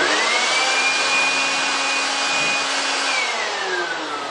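Corded handheld electric blower switched on: its motor whine rises quickly and holds steady over a loud rush of air. About three seconds in it is switched off and the whine falls away as the motor spins down.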